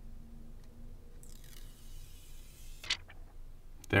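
Thin plastic screen-protector film being peeled off a smartphone's glass display: a faint, soft peeling hiss lasting about a second and a half, then a single short click just before the end.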